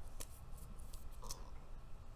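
Two faint sharp clicks with light scraping between them, from makeup tools and containers being handled. One click comes just after the start and the other a little after a second in.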